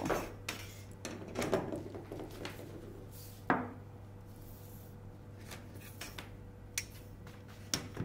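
A long metal ruler and drafting tools being handled on a paper-covered table: scattered light knocks and clicks, with one sharper clack about three and a half seconds in.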